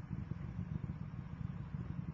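Space Shuttle rocket engines and solid rocket boosters during ascent: a steady, low, crackling rumble.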